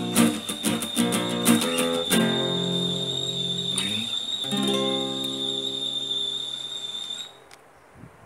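Acoustic guitar strumming quick chords, then two chords left to ring out as the closing chords of the song, dying away near the end. A faint steady high whine sits under the playing and stops with it.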